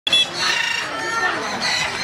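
A rooster crowing, in held, pitched calls, with people's voices alongside.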